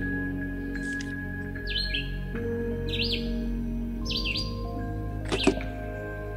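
Soft background music of long held tones, with a bird chirping over it about once a second.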